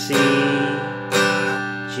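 Guitar strumming a C major chord, two strums about a second apart, each left ringing.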